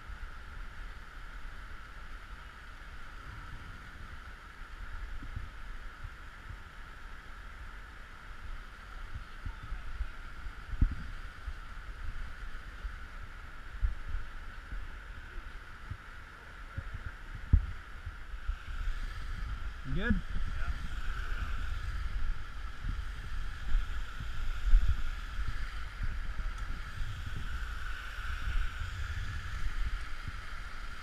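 Steady rush of muddy flash-flood water running through a sandstone slot canyon, with low wind buffeting on the microphone and a few soft thumps.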